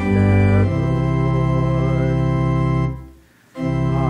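Organ playing a hymn tune in sustained chords: a chord is held for about two seconds, breaks off about three seconds in, and after a half-second pause the next phrase begins.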